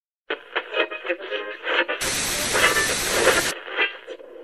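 Intro sound effect of an old television: a tinny, radio-like sound, broken by about a second and a half of loud TV static hiss that starts and cuts off abruptly, then the tinny sound returns.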